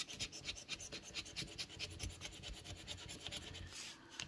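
A coin scratching the coating off a Power 10s scratch-off lottery ticket in quick, repeated strokes, several a second.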